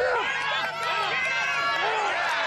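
Several spectators shouting and cheering at once during a youth football play, many voices overlapping.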